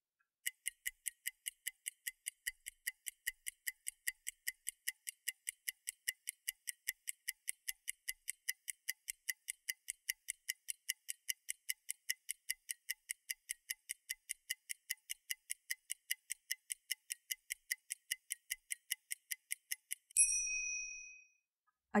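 Clock-style ticking sound effect, a timer ticking steadily at about four ticks a second, then stopping about 20 s in with a single bright bell ding that rings out for about a second, marking the end of the reading time.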